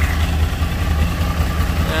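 A 2012 Yamaha R1's stock-exhaust crossplane-crank inline-four idles steadily as it warms up after long storage.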